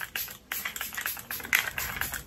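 Several short hissing sprays from a pump-action micro-fine setting mist bottle, pressed in quick succession to mist the face.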